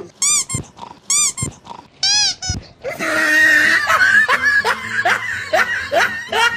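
High-pitched animal-like squeals: three short cries that rise and fall, about a second apart, then a faster run of rising squeals and yelps from about halfway through.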